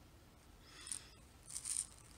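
Faint rustling of hands picking up a small plastic container of glass seed beads, the beads shifting inside, in two soft stretches about half a second in and near the end.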